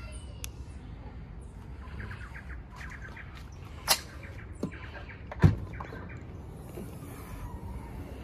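Kia Seltos tailgate being unlatched and lifted open: a sharp click about four seconds in and a heavier thump about a second and a half later, the loudest sound. Birds chirp faintly in the background.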